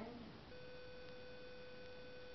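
A steady electronic beep tone at one fixed pitch starts about half a second in and holds without a break.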